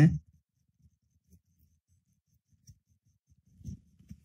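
Ballpoint pen writing on paper: faint, scattered scratches and small ticks, a little louder near the end.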